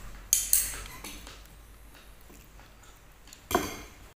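Tableware clinking: two sharp knocks in quick succession near the start, a fainter one shortly after, and another knock near the end.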